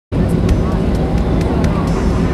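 Airliner cabin noise while taxiing: the engines running with a steady low rumble.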